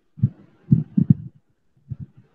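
Muffled, irregular low thumps coming through a faulty microphone feed on a video call, with no clear voice getting through.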